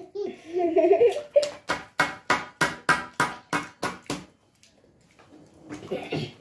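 A brief low vocal hum, then an even run of about a dozen sharp smacks, about three a second, that stops about four seconds in.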